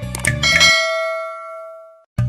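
A bell chime sound effect, a few quick clicks and then one bright ring that slowly fades over about a second and a half, as the background music cuts off.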